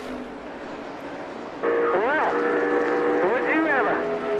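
NASCAR stock car engine noise from the race broadcast. About a second and a half in it turns suddenly louder, a steady engine note that revs up and back down twice.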